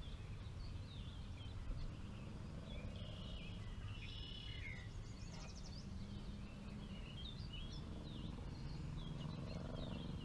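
Several small birds singing in the background: scattered short chirps and whistles that rise and fall, and a quick high trill about halfway through. Beneath them is a steady low rumble.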